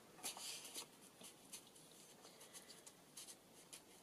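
Faint paper rustling and light ticks as the tea-dyed paper tags and pages of a handmade junk journal are handled and turned, busiest in the first second.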